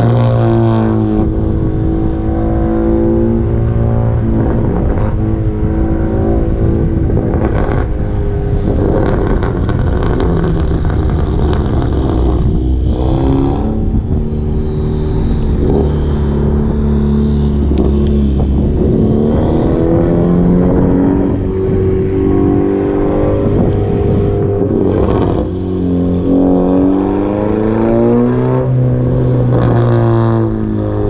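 Car engine accelerating hard, its pitch climbing and then dropping at each gear change, with a run of sharp pops and crackles about eight to eleven seconds in.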